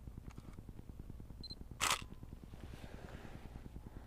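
Nikon D90 digital SLR taking one photo: a short high beep from the camera's focus confirmation, then, a moment later and about halfway through, a single quick click of the shutter and mirror at a fast shutter speed.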